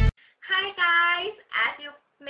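A young woman's voice in a high sing-song, holding a few long drawn-out notes in two or three short phrases. The intro music cuts off just before it.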